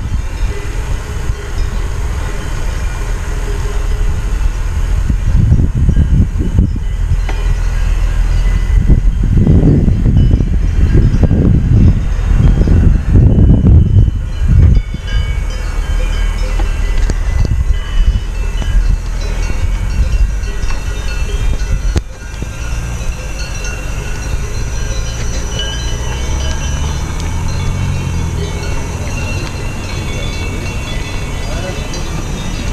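Wind buffeting the microphone of an action camera carried on a moving bicycle: a loud, gusty low rumble that swells and fades, heaviest in the middle, and drops abruptly to a lighter rumble about two-thirds of the way through.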